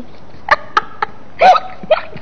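A person laughing in short, separate bursts, about five in the space of two seconds.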